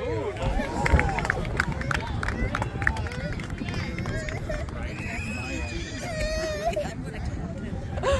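Shouted calls and voices of players and spectators across the field, some of them high-pitched and drawn out, over a steady low rumble.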